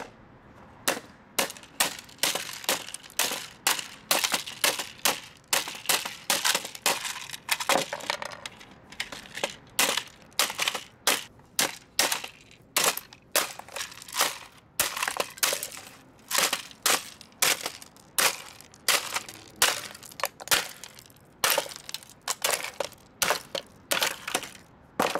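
A hammer smashing a plastic cordless phone keypad base, striking it over and over at about two to three blows a second, with the plastic cracking and breaking into pieces.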